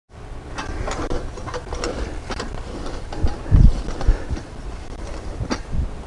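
Valley Oak wheel hoe with a hiller attachment being pushed through loose soil: a scraping, crumbling noise with a run of small clicks and rattles from the tool, and a heavier thump about three and a half seconds in.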